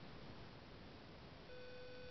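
Faint steady hiss, then about three-quarters of the way through a steady electronic beep tone starts and holds without changing pitch.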